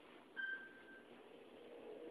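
A single electronic ding from a Mitsubishi Electric elevator: one clear high tone that fades over about half a second. Near the end comes the faint rumble of the elevator doors sliding shut.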